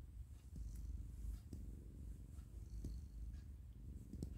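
Ginger-and-white cat purring steadily while being held and stroked, a low continuous rumble, with a few faint clicks.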